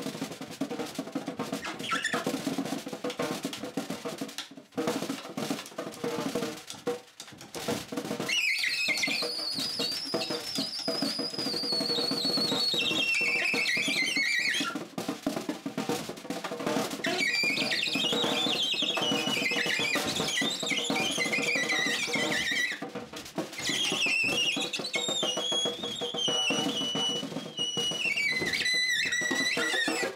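A snare drum played with sticks in fast, dense rolls and strikes, with a saxophone joining in very high, wavering lines that drift downward. The saxophone comes in about eight seconds in, breaks off, and returns twice.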